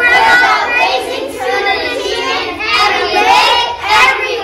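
A class of young children singing together in unison, many voices at once.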